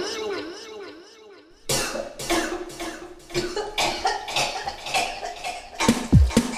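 A wavering voice tails off. Then, about two seconds in, a person coughs and gags in a rough run of short bursts over a held, voiced tone.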